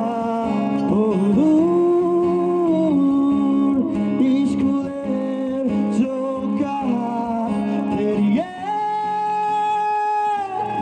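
Live performance of a Bengali song mashup: male voices singing through microphones and a PA over guitar accompaniment, with long held notes, one starting shortly before the end.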